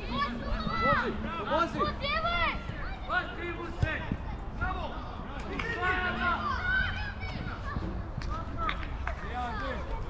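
Shouted calls from players and coaches on an outdoor football pitch, many high-pitched children's voices overlapping, with one sharp knock a little under four seconds in.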